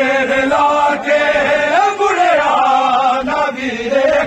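Men's voices chanting a noha, a Shia mourning lament, in long, slowly gliding melodic lines with no pause.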